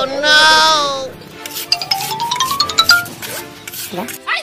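Edited-in comic sound effects: a loud, wavering, bleat-like cry in the first second, then a rising whistle-like glide with rapid ticks, over music.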